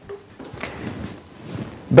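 Plastic child-resistant screw cap on an OxyBee bottle being worked open by hand: quiet scraping and rubbing of plastic.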